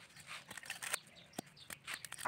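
Dry coconut husk fibres being torn and pulled apart by hand: quiet, irregular crackling and ripping.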